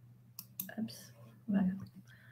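A computer mouse click about half a second in, as a screen share is brought up, followed by quiet muttered speech.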